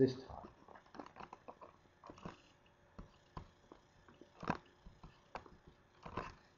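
Faint, scattered computer mouse clicks, the loudest about four and a half seconds in.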